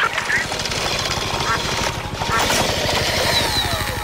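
Helicopter rotor beating, a rapid, steady low pulsing, with a falling whine near the end.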